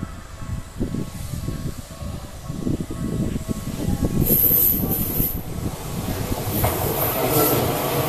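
Tokyu 1000 series electric train approaching and passing close by, the rumble of its wheels on the rails growing louder, with high-pitched hiss from the wheels about four seconds in and again near the end.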